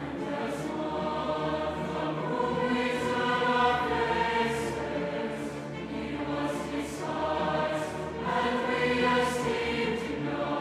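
A large mixed choir sings sustained phrases with a string orchestra. The sound swells to two louder peaks, one a little before the middle and one near the end.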